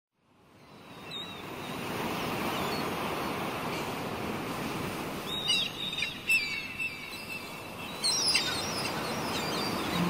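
Sea surf washing steadily, fading in over the first two seconds, with short bird chirps over it about a second in, around five to six seconds in and again near eight seconds.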